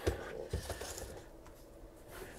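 A wooden radio cabinet being lifted, turned and set down on a rubber bench mat: faint rubbing and scraping with a light knock about half a second in, quieting toward the end.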